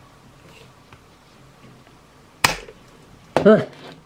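Faint handling noise, then a single sharp click about halfway through as a shotgun microphone's clip mount snaps onto the side rail of a tactical helmet. A brief vocal exclamation follows near the end.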